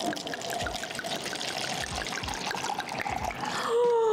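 Red wine poured from a glass bottle into a cup, a steady trickling pour. A woman's voice comes in near the end.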